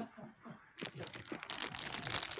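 Clear plastic packaging crinkling as a bagged fake severed-hand prop is grabbed and handled; the crackling starts about a second in, after a brief quiet moment.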